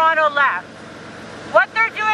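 A woman's voice amplified through a megaphone, speaking in short phrases, with a pause of about a second in the middle.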